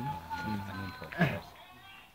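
People's voices talking over faint steady musical tones, with a short rising vocal sound about a second in.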